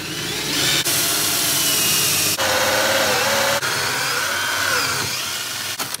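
Cordless drill running a hole saw through a wooden floor: a steady loud cutting noise with a motor whine that rises and sags as the saw loads up. The sound shifts abruptly a few times.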